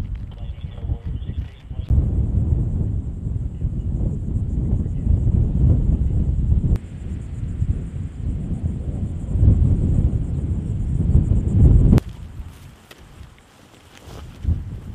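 Wind buffeting the microphone: a low, gusting rumble that breaks off abruptly about two and seven seconds in and stops suddenly near the end. A faint, high, pulsing buzz runs above it.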